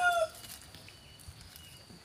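The end of a rooster's crow, held on one pitch and stopping abruptly about a quarter second in. After it there is only quiet outdoor background with a few faint high chirps.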